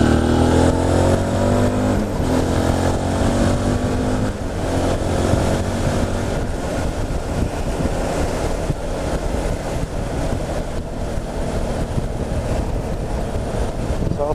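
A 2012 Suzuki V-Strom DL650's V-twin engine, fitted with an Akrapovič exhaust with the baffle left in, pulling under way. Its engine note rises slightly over the first few seconds, then settles into a steady cruise where wind and road noise take over.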